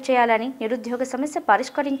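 A woman reading the news aloud: continuous speech and nothing else.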